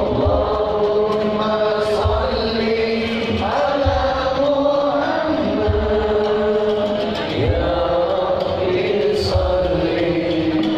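Sholawat, devotional Islamic song praising the Prophet Muhammad, sung by many voices together in long held, gliding lines over the sound system, with a low drum beat underneath.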